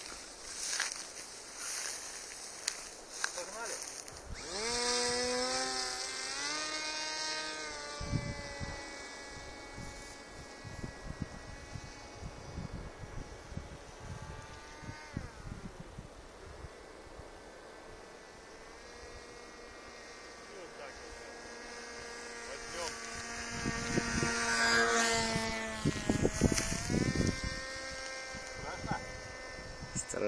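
Radio-controlled flying-wing model plane's motor and propeller. About four seconds in it spins up to full power with a rising whine at the hand launch, then settles into a steady buzzing drone. The drone fades as the plane flies off and swells again as it passes closer near the end.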